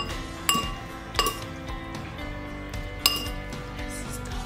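Metal forks clinking against a dish: three sharp, ringing clinks, about half a second, a second and three seconds in. Soft background music with held notes plays underneath.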